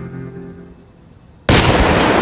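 A hydrogen–air mixture inside a metal tin exploding with a sudden loud bang about one and a half seconds in, blowing the tin into the air. Loud noise carries on after the bang.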